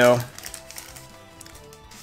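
Faint background music with soft held notes.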